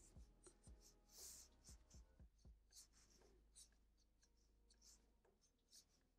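Black felt-tip marker drawing quick short strokes on paper, very faint, about a dozen flicks that thin out after the middle.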